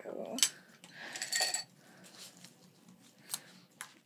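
Metal scissors being picked up and handled, clinking. There is a sharp click about half a second in, a brief metallic ring a second later, and a couple of soft clicks near the end.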